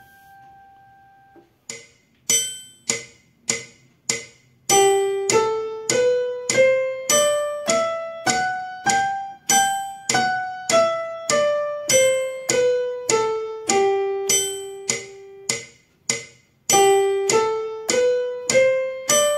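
Keyboard with a piano sound playing the G major scale with the right hand, one octave up from G and back down, a note a little over every half second, ending on a held G. A few soft notes come before the run, and the next run starts near the end.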